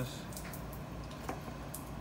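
Low steady background hum with a few faint, short clicks.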